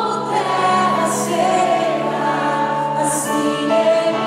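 Live gospel song: a woman singing into a microphone over instrumental accompaniment, heard through the hall's sound system.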